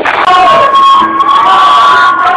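Rock concert crowd cheering and shouting, loud, with one long held high note over it starting about a quarter second in.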